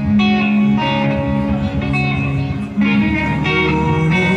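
A live rock band playing an instrumental passage led by electric guitar, with sustained chords that change about once a second.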